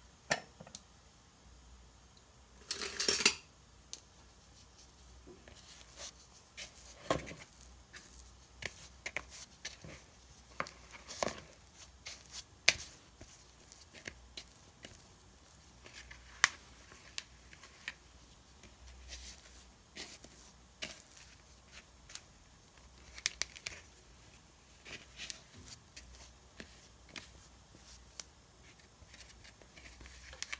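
A plastic mixing bowl being handled and sticky bread dough worked with a wooden spoon: scattered light knocks, clicks and scrapes, with one louder, longer scrape about three seconds in.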